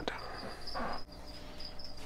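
A high chirping that pulses steadily, like a cricket, with a click at the start and a short rustle of handling just under a second in.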